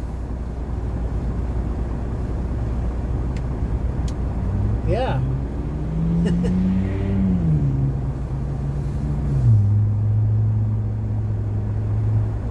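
Semi-truck diesel engine idling in the cab, a steady low rumble. From about four seconds in, a low pitched drone rises, falls and settles on a lower note.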